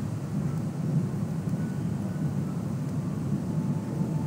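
Steady low background rumble of room noise, with no distinct events, during a pause in speech.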